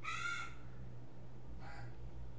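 A bird calls twice in the background, a strong call right at the start and a fainter one near the end, over a steady low hum.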